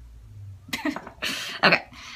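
A woman laughing: three short, breathy bursts of laughter, starting under a second in.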